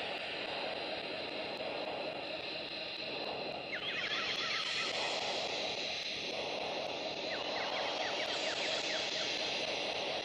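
Steady outdoor background noise, like distant traffic or a plane passing far off, with a few clusters of short high chirps. The upper part of the noise changes abruptly about four seconds in.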